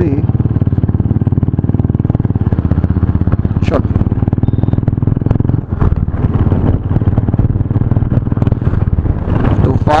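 Motorcycle fitted with an aftermarket exhaust, running steadily at cruising speed with a rapid, even train of exhaust pulses. The level dips briefly just past halfway, then picks up again.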